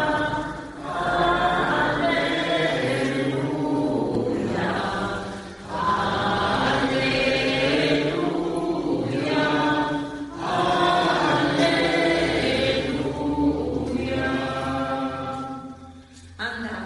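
A choir chanting in long, sustained sung phrases of about five seconds each, with short pauses between them.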